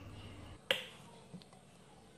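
A single sharp click about a second in, followed by a fainter tick, over quiet room tone.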